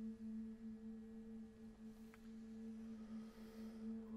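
Unaccompanied chamber choir holding one very soft, steady sustained note.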